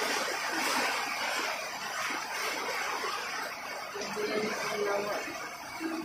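Heavy typhoon rain falling steadily, an even hiss with no letup.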